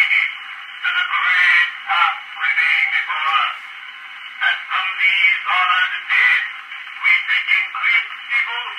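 A man's recorded voice reciting the Gettysburg Address, played back through the horn of an acoustic cylinder phonograph. It sounds thin and tinny, with no low end, in the manner of an early acoustic recording.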